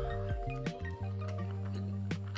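Background music: a calm tune of held notes that change every half second or so.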